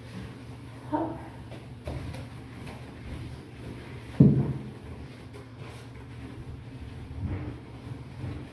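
A sponge scrubbing ceramic wall tiles and grout in quick back-and-forth strokes, with a single sharp knock about four seconds in.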